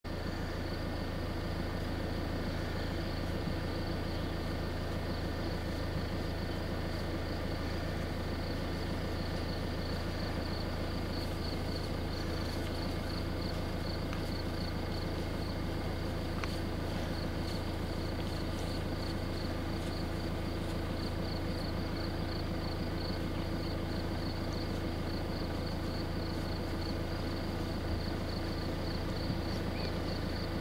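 Steady low rumble with an insect's rapid, even, high-pitched chirping over it.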